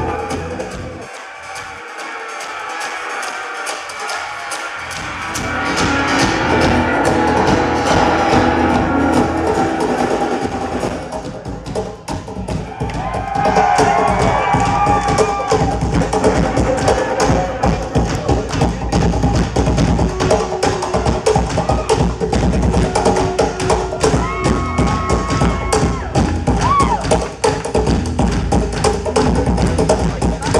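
Live acoustic-rock band playing through a stage PA, heard from the audience: acoustic guitars, electric bass, drum kit and cajón, with occasional singing. The first few seconds are thin with no bass, then the full band comes in with a steady beat from about halfway.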